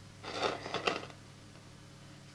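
Gritty, sandy compost scraping and crunching under the fingers as a cactus cutting is pressed into it in a clay pot: a short cluster of scrapes in the first second, over a low steady hum.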